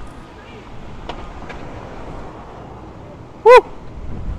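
Steady street traffic noise, then a loud, brief shout of "Woo!" about three and a half seconds in.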